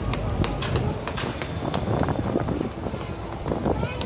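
Irregular footsteps on a tiled pavement, several clicks a second, over a low rumble and a faint murmur of voices.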